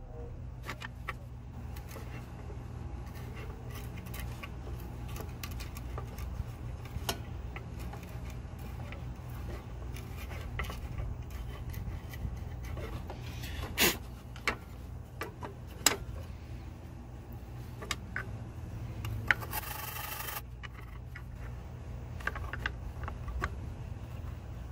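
Wooden stick scraping silicone sealant off the edge-connector pins of a Ford PCM circuit board: a run of small scratches and ticks with a few sharper clicks, and a brief harsher scrape near the end. A steady low hum runs underneath.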